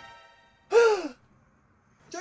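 A fading held musical note, then about a second in a short voiced gasp-like exclamation whose pitch rises and falls.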